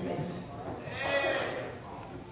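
The end of a spoken sentence, then about a second in a short, high-pitched vocal call from a person that rises and falls in pitch.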